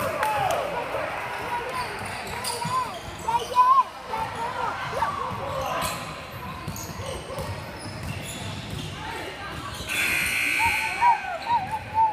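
Basketball being dribbled on a hardwood gym floor, with sneakers squeaking as players move, echoing in a large gym.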